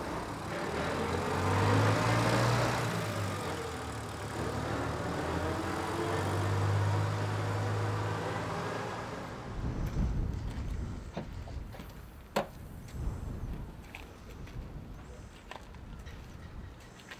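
International Harvester tractor towing a trailer drives past, its engine running steadily and then fading away after about eight or nine seconds. Quieter street sounds follow, with a few light clicks and one sharp click about twelve seconds in.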